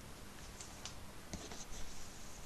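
Paper sheets being handled and slid across a desk: a few light clicks and taps, then a short high papery rustle near the end.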